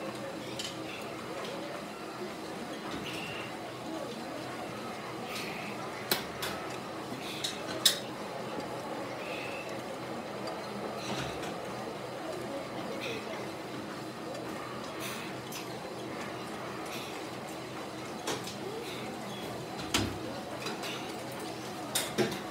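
Gym room sound: low background voices with a few sharp metallic clinks of gym equipment, the loudest about six to eight seconds in and again near the end.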